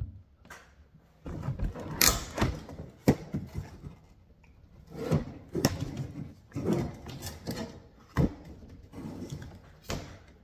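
Red plastic tail light panel from a 1997 Lincoln Mark VIII being handled and shifted about: irregular knocks, clicks and scrapes, the sharpest knocks about two, three and eight seconds in.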